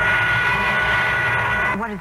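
A siren-like signal sound effect: a steady high whine made of several tones that holds, then cuts off abruptly near the end.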